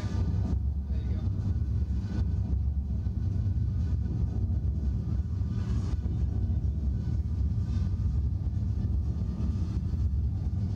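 Steady low mechanical rumble from a slingshot thrill ride while the riders sit strapped in before launch.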